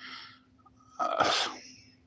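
A man sneezes once, a loud sharp burst about a second in, with a short breathy intake just before it.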